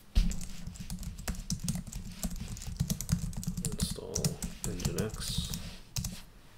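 Computer keyboard typing: a fast, dense run of key clicks that starts abruptly and goes on without a break, with a last keystroke near the end.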